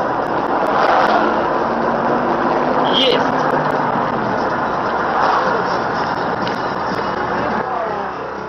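Steady road and engine noise heard from inside a car cruising at highway speed, about 85 km/h, loud and even throughout.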